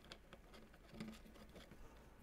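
Near silence, with a few faint light clicks of hands handling a small bolt and the metal bracket while starting it by hand.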